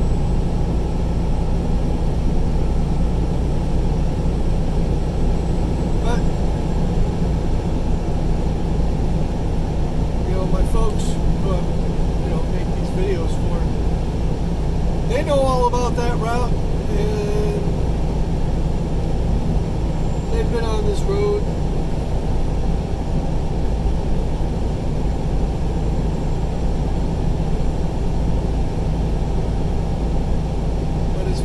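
Steady road and engine noise inside a vehicle cruising at highway speed, heavy in the low end. Brief faint voice-like sounds come through about halfway in.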